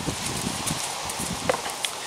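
Fingers twisting and pressing the neck of a PVA solid bag around its stem close to the microphone: soft irregular knocks and rustling, with a sharp click about one and a half seconds in.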